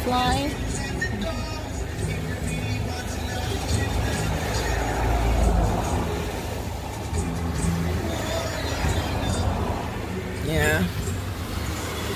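Riding in a moving car: a low, steady road and engine rumble, heaviest about midway, with music playing and a brief voice near the end.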